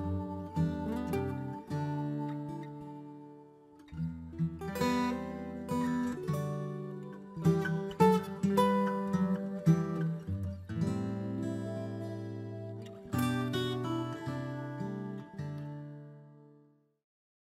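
Background music: an acoustic guitar strumming and picking chords that ring out, dying away near the end.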